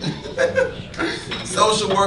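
Spoken monologue with chuckling laughter mixed in.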